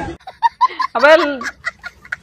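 A small child's high-pitched vocal outbursts: a few short yelps, then one longer call that rises and falls about a second in, followed by a few sharp clicks.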